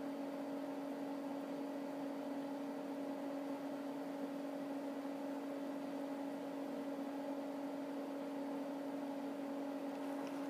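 A steady, unchanging hum over a soft hiss.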